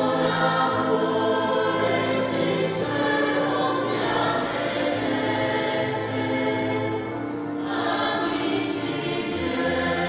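Choir singing a hymn in long, held notes.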